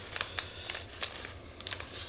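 Faint, scattered crinkles and small ticks from a plastic packet of black Czech Nymph dubbing being handled, as dubbing is pulled from it.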